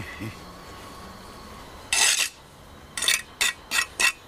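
A steel bricklaying trowel scraping and striking mortar and brick on a brick arch: one longer scrape about halfway through, then short sharp strokes about three a second near the end.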